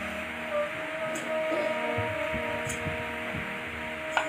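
Harmonium holding a steady chord, several tones sustained together at an even, moderate level.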